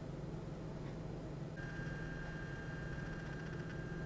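Quiet room tone with a steady low electrical hum; a thin, steady high whine comes in about a second and a half in.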